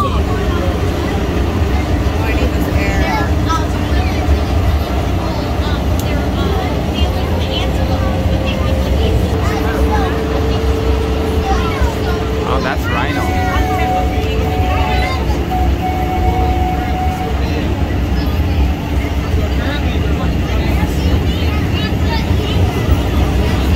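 Miniature zoo train running along its track, heard from the open passenger car as a steady low rumble, with a few steady tones that each hold for a few seconds.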